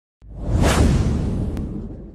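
Intro whoosh sound effect over a deep rumbling low end. It swells in sharply just after the start, peaks within about half a second, and fades slowly, with a faint click partway through.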